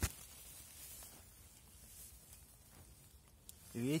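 Faint rustling and handling noise as a handheld camera is pushed down among blackberry leaves, with one sharp knock at the very start and a few small ticks after it.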